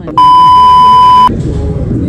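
A steady high-pitched electronic bleep, about a second long, switched on and off abruptly and much louder than the surrounding alley noise, the kind of tone laid over a soundtrack in editing to censor a word.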